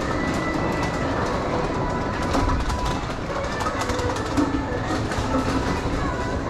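Steady rumbling noise with scattered light clicks and rattles.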